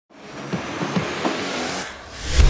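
Intro sound effect of a car engine revving: a few short rising revs over a hiss, fading in from silence at the start.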